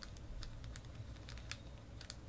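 A run of faint, irregular clicks and taps from a hard-plastic trading-card holder being handled.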